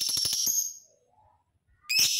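Lovebird calling: a shrill, rapid chattering call of about ten pulses a second lasting under a second, then another short shrill call near the end.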